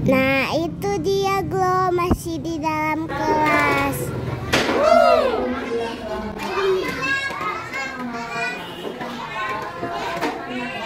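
A group of young children's voices in a classroom, calling out, chattering and partly singing together, with high swooping cries about five seconds in.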